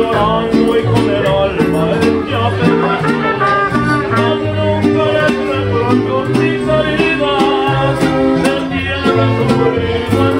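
Mariachi band playing live: guitars strummed in a steady rhythm over a stepping bass line, with a melody carried on top.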